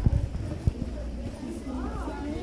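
Footsteps on a hard floor: a few irregular knocks and scuffs, with a voice starting up near the end.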